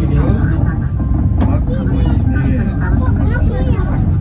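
Steady low rumble of a monorail-type elevated car running, heard from inside the cabin, with voices talking over it throughout.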